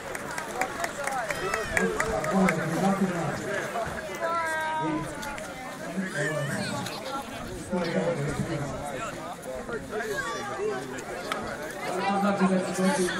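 A crowd of spectators talking over one another, with one raised voice standing out about four seconds in.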